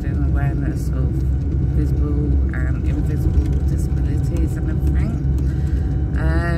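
Steady low rumble of a car's road and engine noise heard inside the moving car's cabin, with a couple of brief, faint voice sounds.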